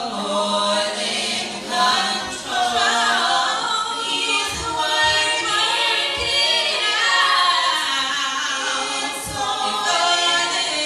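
A four-woman vocal group singing a cappella in harmony, with a few brief low thumps partway through.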